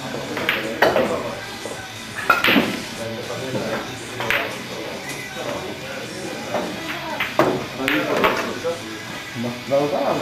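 Indistinct background chatter and music in a billiard hall, broken by several short sharp clicks, the loudest about two seconds in. The clicks are typical of pool balls striking each other and cue tips hitting balls.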